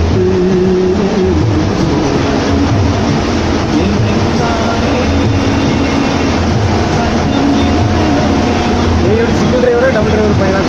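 Steady engine and road noise inside a moving bus cabin, with a voice carrying on over it.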